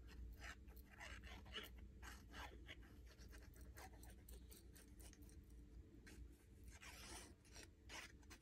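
Near silence: faint rustles and light taps of thin cardstock being handled while liquid glue is applied along its edges from a fine-tip bottle, over a low steady hum.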